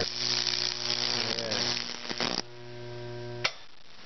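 Microwave oven transformer humming at 2 kV while the current burns through damp cedar at the nail electrodes with a dense crackle and sizzle. The crackling stops about two and a half seconds in, the hum carries on alone for about a second, then a click and the hum cuts off.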